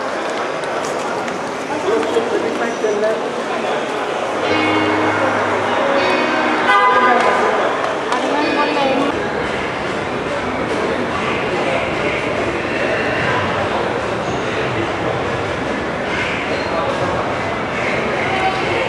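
Steady crowd chatter, many people talking at once, with a short steady tone about five seconds in.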